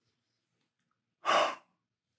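A man's single short, breathy sigh about a second into an otherwise quiet stretch, an exhale as he smells perfume on his wrist.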